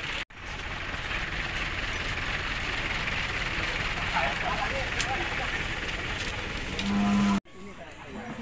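Busy outdoor hubbub of a crowd around cattle, with a few faint voices. Near the end comes a single short, low, steady moo from a cow or bull, the loudest sound.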